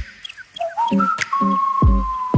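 Electronic intro music: a few short chirps, then a whistling synth tone that glides up about halfway in and holds, sinking slowly, with a bass drum hit near the end.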